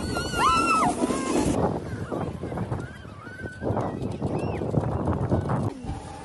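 High-pitched squeals and shouts of children sledding, loudest in the first second with a few more cries later, over the scraping rush of plastic sleds sliding on snow.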